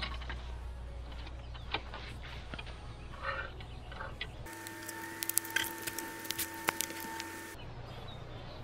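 Handling clicks and rattles as a folding portable solar panel in its hard case is opened and its metal stand snapped into place. From about halfway in, a steady tone runs for about three seconds and then stops suddenly, with a quicker run of sharp clicks over it.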